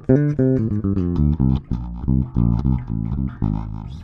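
G&L L-2000 Tribute electric bass played solo through its two humbucking pickups wired in series for higher output: a quick run of plucked notes, then repeated low notes.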